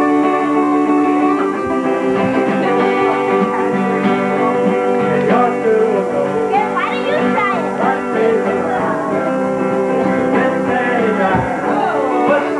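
A 1979 Guild D40C acoustic guitar and an electric guitar playing a holiday song together, live and steady. A wavering melody line joins in about five seconds in and again near the end.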